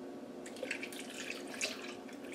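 Milk pouring into a glass blender jar over ice cubes, a faint liquid pour starting about half a second in.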